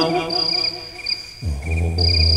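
Unaccompanied menzuma chanting by a male voice: a held note fades out, and about halfway through a low drawn-out note begins the next line. Throughout there is a steady high, pulsing chirping.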